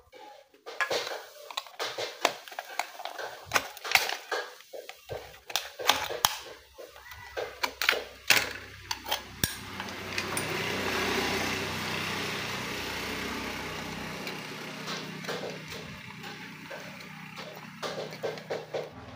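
Aluminium drink can being handled and cut, a run of sharp metallic clicks and knocks. In the middle a steady hiss with a low hum swells and fades, and the clicks return near the end.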